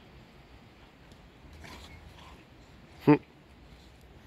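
Faint scuffling of dogs playing rough on grass, low against the background. About three seconds in, a man gives one short, loud 'hm'.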